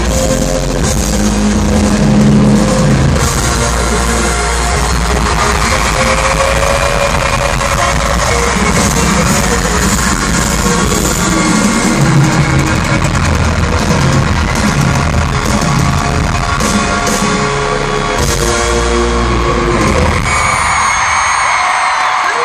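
Loud live pop music with amplified singing at an arena concert, heard from among the audience. Near the end the song stops and the crowd cheers.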